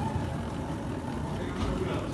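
Wheeled cases rolling over a hard indoor floor, a steady rumble, with faint voices behind.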